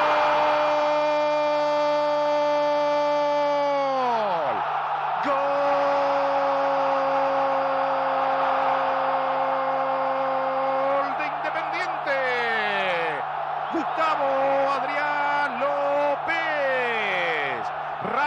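Football commentator's drawn-out goal cry: one "gol" held about four seconds and dropping in pitch as it ends, then held again for about six seconds, followed by shorter shouts that slide down in pitch. Crowd noise and a steady low hum run underneath.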